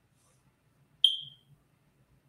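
A single short, high-pitched ding about a second in that fades out within half a second.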